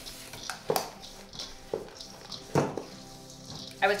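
A wooden spoon stirring a stiff oat-and-butter crumble mixture in a stainless steel mixing bowl, with a few sharp knocks and scrapes of the spoon against the bowl.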